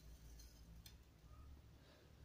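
Near silence: faint room tone with a few faint ticks.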